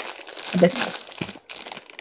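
Plastic instant-noodle packet crinkling as it is handled in the hands.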